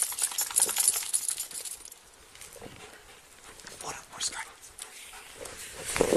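Rapid metallic jingling for about the first two seconds, like keys or chain links shaken by movement, then quieter scattered footsteps and scuffs, with a louder rustle right at the end.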